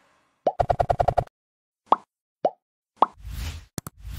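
Cartoon-style sound effects for an animated subscribe button: a fast run of about nine pops, then three single plops about half a second apart. Near the end come a whoosh and two sharp clicks.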